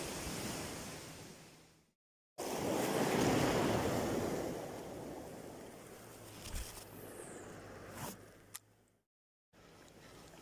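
Ocean surf washing, with wind on the microphone. It is loudest a few seconds in and then fades, and it is broken twice by brief dropouts to silence. A few faint clicks come near the end.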